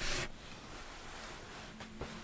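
Quiet room noise after a brief rustle at the very start, with a faint, steady low note coming in near the end.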